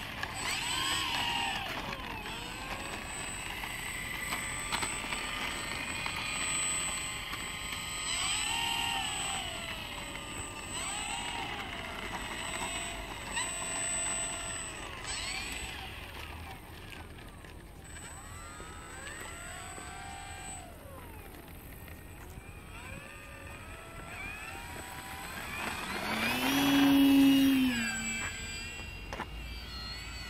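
E-flite P-51 Mustang 1.2 m model plane's electric motor and propeller whining, the pitch rising and falling again and again with the throttle as it taxis and takes off. Near the end it makes a loud close pass, its pitch rising and then dropping as it goes by.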